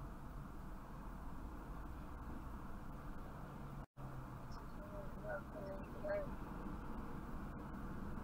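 Steady low hum and rumble of a stopped car's cabin with the engine idling, picked up by a dashcam. The sound cuts out completely for a split second just before the middle.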